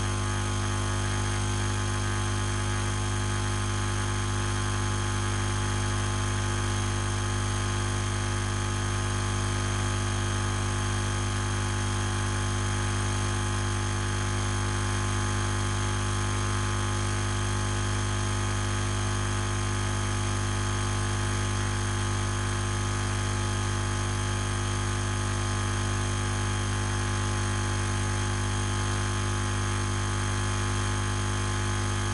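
Loud, steady electrical hum and buzz: a strong low hum with many fainter steady tones above it, unchanging, with no other sounds.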